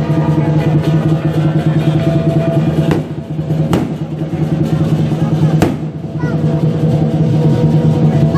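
Chinese lion dance percussion: a big drum beating with clashing cymbals and gong, the metal ringing steadily under the beat. Several loud crashes stand out around the middle.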